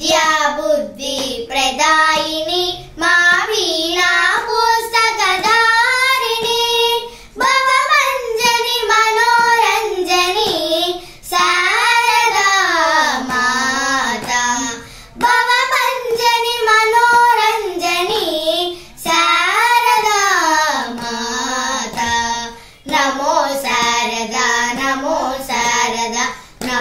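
Two young girls singing a devotional song to Goddess Saraswati in unison, unaccompanied, with ornamented melodic lines that glide and waver between notes. They sing in phrases of a few seconds, with short breaks for breath.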